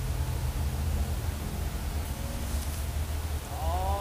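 A steady low hum with a faint even hiss. Faint voices come in near the end.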